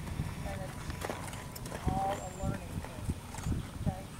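A horse's hooves striking grass footing as it trots, a few dull irregular thuds, with faint voices in the background.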